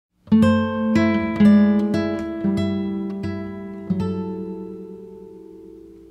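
Background music: an acoustic guitar picking a short run of single plucked notes, then a last note left to ring and fade away from about four seconds in.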